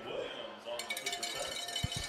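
Stadium crowd ambience at a football game: faint distant voices, with light clinking and rattling joining in under a second in.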